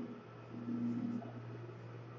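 Room tone: a steady low hum, with a brief faint voice-like sound partway through.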